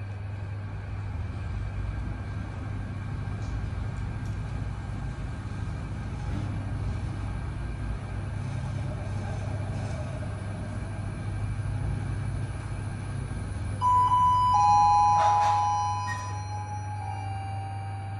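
Passenger lift car travelling upward with a steady low hum. Near the end, a two-note descending electronic chime rings for a few seconds with a click among it, as the car arrives at its floor.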